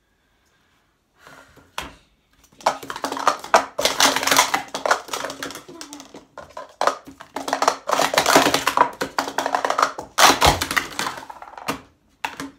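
Hard plastic sport-stacking cups clattering rapidly as they are stacked up and down on a stacking mat, in two busy runs with a short lull between, and a heavier knock about ten seconds in. It is a fumbled run: cups tip over and scatter.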